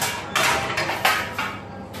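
Kitchen clatter at a pizza counter: a clink, then about a second of metal scraping and knocking that dies away near the end.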